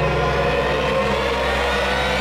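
Suspenseful background score: a sustained low drone with several held tones layered over it, steady in level throughout.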